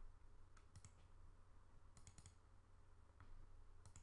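Faint computer mouse clicks over near silence: a few single clicks and a quick double click about two seconds in.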